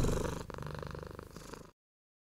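Domestic cat purring close to the microphone, a steady low rumble with a brief break about halfway through, then cutting off suddenly shortly before the end.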